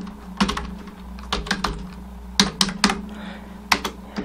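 Computer keyboard keystrokes typing out a single word, in short runs of clicks with brief pauses between them.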